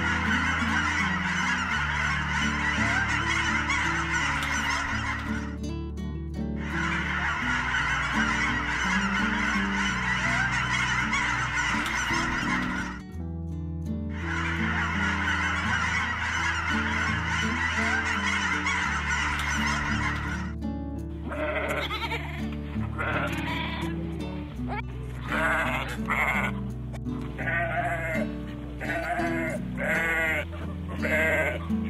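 A group of white domestic ducks quacking together in a dense chatter, in three stretches with short breaks between them. About two-thirds of the way through, this gives way to a series of separate goat bleats. Soft background music with a slow bass line runs underneath.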